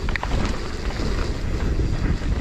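Wind buffeting the action-camera microphone over the rumble of mountain-bike tyres on a rough dirt trail, with scattered clicks and rattles from the bike.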